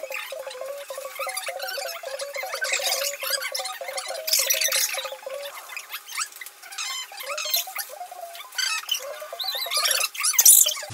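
Paper gift bags and tissue paper rustling and crinkling as they are opened and emptied, in repeated short scratchy bursts, over background music.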